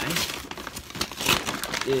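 Paper rotisserie-chicken bag crinkling and rustling as it is pulled open by hand, in irregular bursts.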